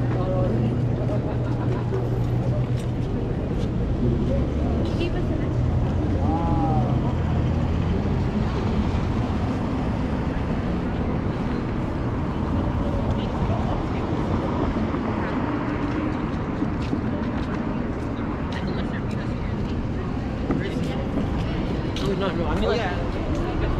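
Busy city street ambience: traffic running by, with a steady low engine hum for the first several seconds, and voices of passers-by talking now and then.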